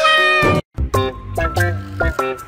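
A long, drawn-out cat meow that cuts off abruptly about half a second in. After a brief gap, background music plays a bouncy melody of short notes.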